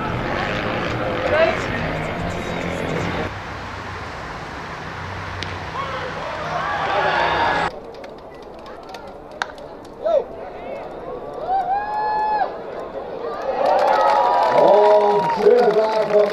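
Voices at a baseball game: chatter from spectators and players over ballpark ambience, then a few drawn-out shouted calls and overlapping voices in the second half.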